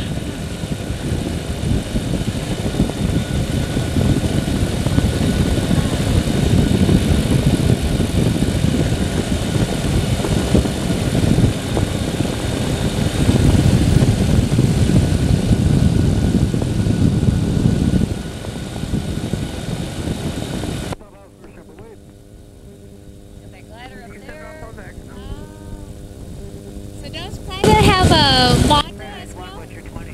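Microlight trike in flight: the pusher engine and propeller drone under heavy wind rumble for most of the clip. About two-thirds of the way through, the sound abruptly turns much quieter, leaving a steady engine hum with faint voices and a short loud burst of voice near the end.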